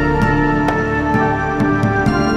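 Dungeon synth music: sustained synthesizer chords held over a bass line that shifts note a few times, with a few short percussive clicks.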